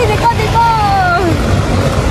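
A young woman's voice speaking with a long gliding call over loud, steady roadside background noise with a low rumble.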